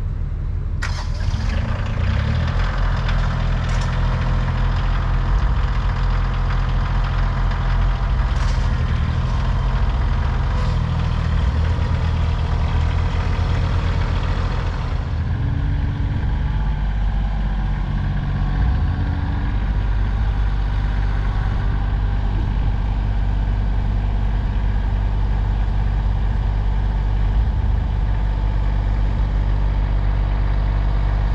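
Diesel engine of a Kioti compact tractor running as it moves and works its front loader, with a steady low engine hum throughout. The engine gets louder and harsher about a second in and settles back to a smoother run about halfway through.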